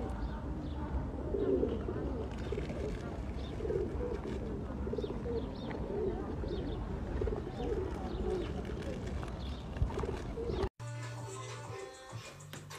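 Feral pigeons cooing over and over, the low calls breaking off about a second before the end.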